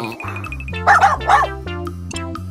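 A cartoon puppy barking twice in quick, short yaps about a second in, over children's background music.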